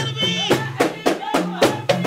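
Moroccan folk music: women singing over frame drums struck in a quick, driving rhythm, with a low sustained tone underneath.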